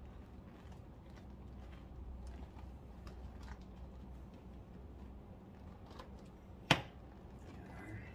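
Hands working the wire bead of a Michelin mountain bike tyre onto a Nukeproof Horizon V2 rim: faint rubber rubbing and small scattered clicks, with one sharp snap about two-thirds of the way through.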